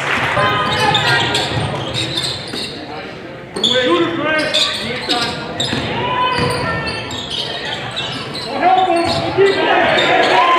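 A basketball being dribbled on a hardwood gym floor during live play, with voices of players, coaches and spectators calling out around it in a large gym.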